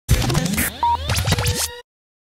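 Short electronic intro sting: scratch-like noises, clicks and many rising pitch glides over a low hum, cutting off suddenly just before the end.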